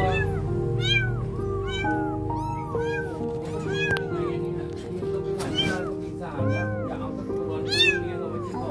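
Young kittens meowing over and over, short thin rising-and-falling cries about once a second, with the loudest cry near the end.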